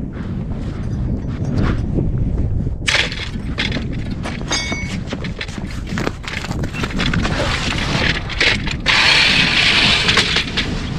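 Wind buffeting the microphone with a low rumble, joined after about three seconds by crunching footsteps on snow-covered ice that come closer, and a louder rustling scrape of snow near the end.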